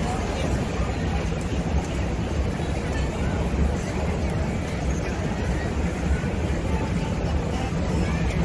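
Steady city street noise heard from the open top deck of a tour bus: a constant low rumble of traffic and engine under a babble of crowd voices.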